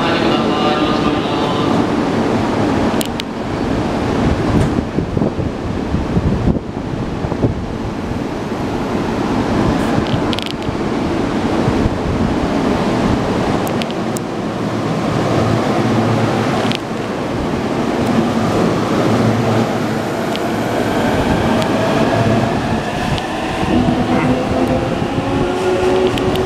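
E233 series electric commuter train at a platform with its doors closing, then pulling away. Over the last several seconds its inverter-driven traction motors give a set of rising whines as it accelerates, and a few sharp knocks come earlier.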